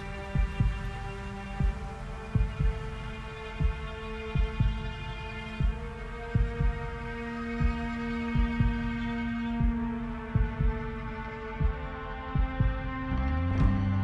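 Intro background music: sustained synth chords over a low, doubled thump about once a second, like a heartbeat. A deeper bass note comes in near the end.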